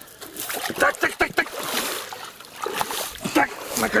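Pond water splashing and sloshing in irregular bursts as a person wades out of the shallows and climbs onto the bank.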